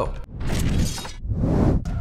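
Edited-in transition sound effect between countdown entries: two noisy bursts, the first starting about a third of a second in and the second following right after it stops.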